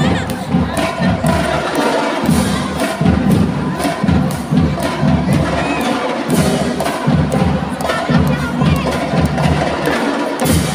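Marching band drums and percussion playing a loud, beat-driven piece, with a crowd cheering and children shouting over the music.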